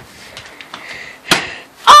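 A partly filled plastic water bottle flipped onto a cabinet top, landing with a single sharp thunk just over a second in.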